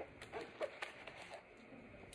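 Faint handling sounds: a few light taps and rustles in the first second and a half as a counting stick is slipped into a classroom pocket chart.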